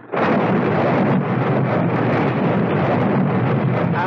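Radio-drama sound effect of a heavy storm, rain and wind, cutting in suddenly just after the start and then running on steadily.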